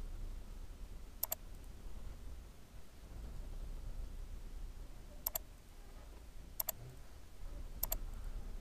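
Computer mouse button clicks: four separate sharp clicks, each a quick double tick of press and release, a few seconds apart, over a faint steady low hum.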